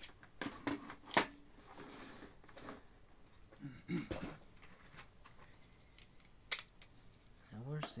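Scattered light clicks and taps of hands handling the opened plastic-cased scale, the sharpest about a second in and another near six and a half seconds.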